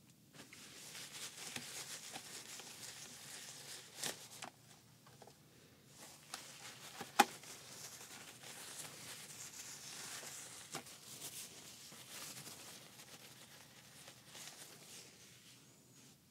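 Cloth and tissue rubbing and wiping over the rubber viewfinder eyecup and body of a Panasonic HMC-152 camcorder, with soft crinkling and scattered light clicks from handling the camera. A single sharp click about seven seconds in is the loudest sound.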